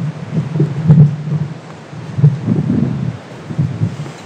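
Wind buffeting an open-air microphone, coming and going in irregular gusts.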